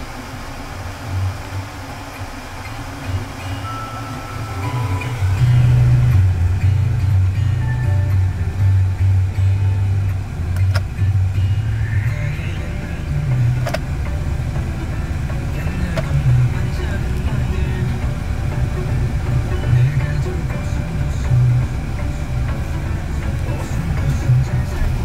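SsangYong Korando engine idling, heard as a steady low hum inside the cabin that grows louder about five seconds in, with music playing in the background.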